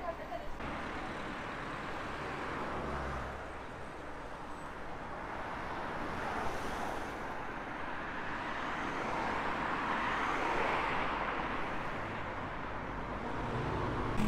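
City street traffic: vehicles driving past, a broad rushing noise that swells to a peak about ten seconds in and eases off toward the end.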